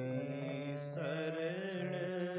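Sikh kirtan from an old tape recording: a harmonium holding steady chords while a man sings, his voice bending in pitch. The sound is dull and lacks treble.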